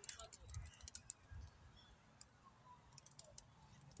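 Near silence with strong wind buffeting the microphone in soft low gusts, and scattered faint light clicks.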